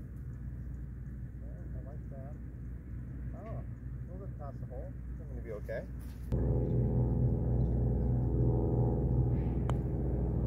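Open-air golf-course ambience with faint wavering calls. About six seconds in it gives way to a louder steady hum with several pitches, and a single sharp click comes near the end.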